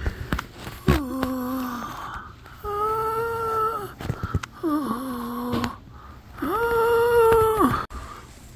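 Four long, drawn-out moaning calls of about a second each, alternating between a lower and a higher pitch, each dropping away at its end.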